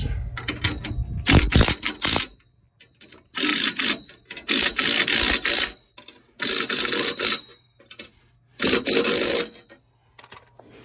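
DeWalt cordless impact gun hammering on the trailer's shackle bolts in about five short bursts of a second or so each, with pauses between. It is tightening them to pull the out-of-line axle hole into place.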